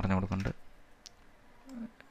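A spoken word ends about half a second in, then a few sparse, single clicks of a computer mouse.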